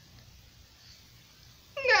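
Mostly quiet room tone, then near the end a man's voice comes in loud and high-pitched, sliding down in pitch, acting out a character who is falling.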